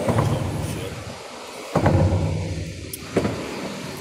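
Thunder rumbling: a low rumble that eases off, then a second, sharper peal about two seconds in that dies away over a second or so.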